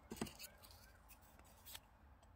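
Near silence with faint scattered clicks and rustles of fingers handling a leaf over a soft clay slab, and one brief soft knock about a quarter second in.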